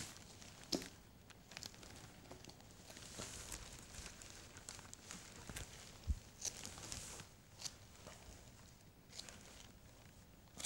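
Faint handling noises of a head immobiliser being fitted: plastic and straps rustling, with scattered light clicks and knocks and a louder knock about six seconds in.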